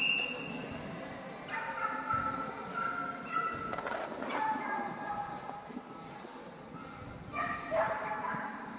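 A dog barking in high-pitched yips, in a run of barks from about a second and a half in and again near the end.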